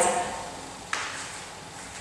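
A single thump about a second in, fading in the room, as a person comes down onto an exercise mat on a wooden floor.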